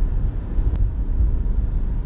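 Cabin noise of a moving car: a steady low road-and-engine rumble, with one faint click under a second in.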